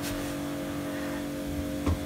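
Steady low background hum with a faint even hiss, and a single soft click near the end.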